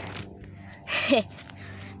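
A child's short, breathy vocal burst about a second in, falling in pitch, over rustling as the phone is moved. A steady low hum runs underneath.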